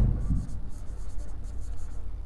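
Marker pen writing on a whiteboard: a run of short, high scratching strokes as a word is written out.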